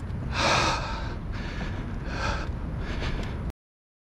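Wind buffeting the microphone with a steady low rumble, over heavy breaths about every two seconds, the loudest about half a second in. The sound cuts off suddenly near the end.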